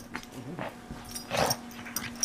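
Pug making its noises while mauling a stuffed toy. It is fairly quiet, with one louder, rougher burst about one and a half seconds in.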